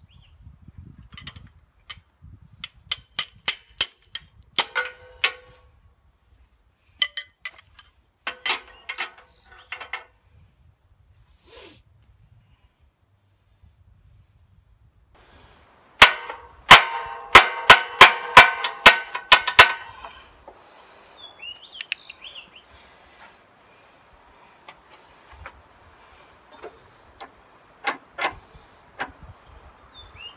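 Steel-on-steel clanging as the ball end of a pressure-locked hydraulic quick coupler is slammed against a steel grapple frame to release the trapped pressure. The loudest part is a rapid run of a dozen or so sharp, ringing clangs starting about sixteen seconds in and lasting about four seconds. Earlier there are two shorter runs of lighter metal strikes from working the coupler with a wrench.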